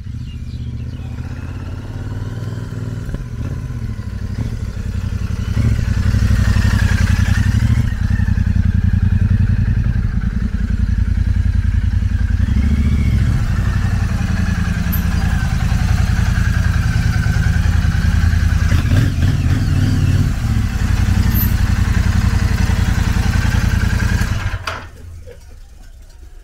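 Royal Enfield Super Meteor 650's parallel-twin engine running as the motorcycle rides up and idles, getting louder about five seconds in, then switched off shortly before the end.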